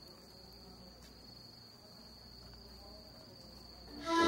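Crickets trilling faintly in one steady high-pitched note, over a low background rumble.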